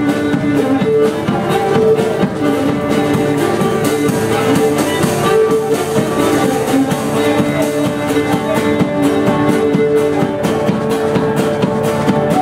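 Cretan lyra bowed in an instrumental passage of a Cretan folk song, holding long melodic notes over acoustic guitar accompaniment.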